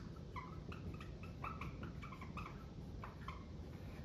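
Dry-erase marker squeaking on a whiteboard as a word is written: a run of short, faint squeaks, one per pen stroke.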